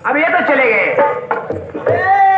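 A stage performer's voice over a microphone and loudspeaker, calling out in drawn-out phrases whose pitch glides up and down.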